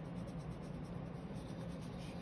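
Faint scratchy brushing of a flat paintbrush laying acrylic paint on mixed-media paper, over a steady low hum.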